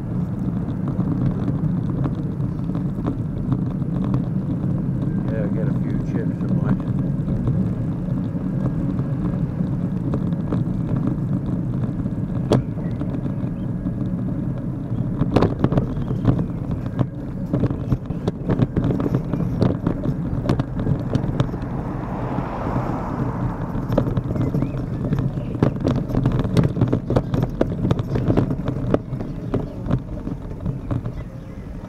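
Steady wind and road rumble on a camera riding along a street, with rattling knocks from the ride over the rough surface from about halfway on. A passing car swells and fades about two thirds of the way through.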